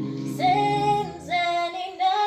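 A small group singing a cappella, a woman's voice holding two high notes in turn over lower voices that fade about a second in.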